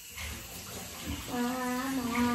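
A faint steady hiss, then a voice holding one long, steady note from a little past halfway.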